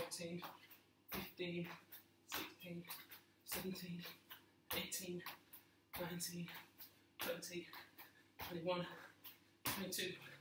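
Repeated two-footed jump landings in trainers on a tiled floor, a sharp thud about every 1.2 seconds, nine in all. Each landing is followed by a short burst of voice from the jumper.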